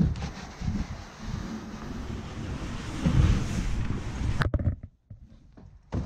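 Footfalls and knocks on a narrow wooden staircase, with rumbling handling and rubbing noise on a body-worn camera's microphone. A sharp click comes about four and a half seconds in, and after it the sound drops to much quieter scattered movement.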